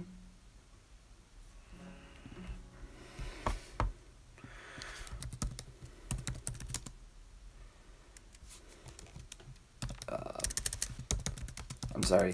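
Typing on a keyboard: runs of quick key clicks, one from about three to seven seconds in and another near the end.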